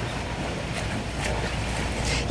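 Wind on an outdoor microphone: a steady rushing hiss over a low rumble.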